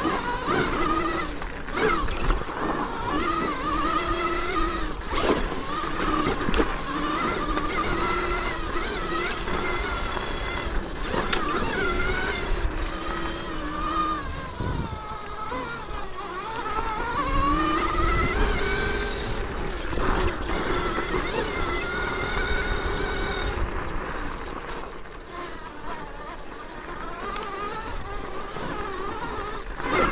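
Electric motor of a Throne Srpnt 72-volt electric dirt bike whining as it is ridden, the whine rising and falling in pitch with throttle and speed and easing off for a few seconds now and then. Knocks and rattles from the bike going over rough trail sound through it.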